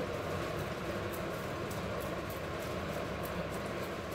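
Boiled potato rubbed on a flat metal hand grater: soft, rhythmic scraping strokes, about three a second, over a steady background hum.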